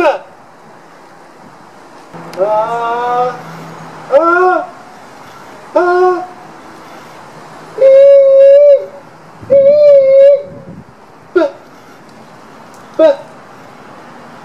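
A man's voice calling and singing wordless vowel tones into the large plaster-lined wooden horn of a homemade phonautograph during a recording test. Short falling calls come near the start and again near the end. Between them are a few rising notes and two held notes of about a second each near the middle.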